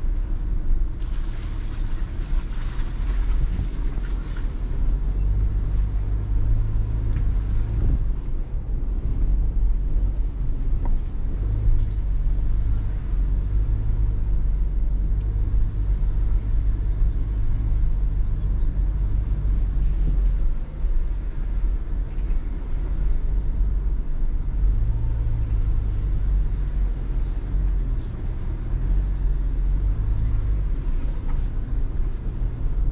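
In-cabin rumble of a Subaru Forester e-BOXER hybrid crawling along a rutted dirt track: a steady low rumble of tyres and suspension on the rough surface, with a brief rushing hiss in the first few seconds.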